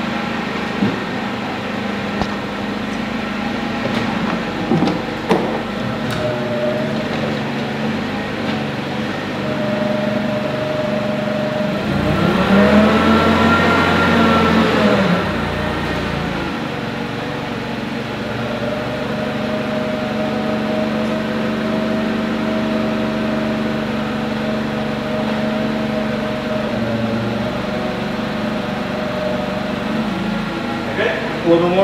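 Forklift running steadily as its mast lifts a wooden work platform. About twelve seconds in it works harder for roughly three seconds, its pitch rising and then falling back, and a few light knocks come early on.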